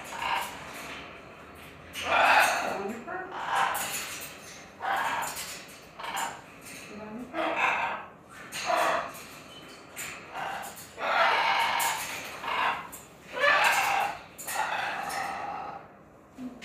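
A blue-and-gold macaw vocalizing in a string of short calls, about one a second.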